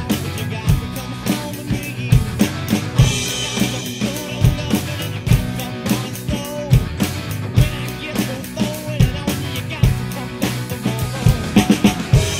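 Drum kit played live along to a rock backing track: a kick-and-snare groove over bass and guitar, with a cymbal crash about three seconds in.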